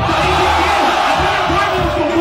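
A rap-battle audience breaks into a sudden mass roar of shouting and cheering, a reaction to a punchline landing on the beat, with the hip-hop beat still pulsing under it.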